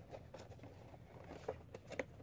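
Faint handling of cardboard collectible boxes: light rustling and scattered taps, with a couple of sharper clicks in the second half.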